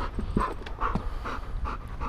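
Belgian Malinois panting in quick, even breaths, about two or three a second: a dog worked up and thirsty.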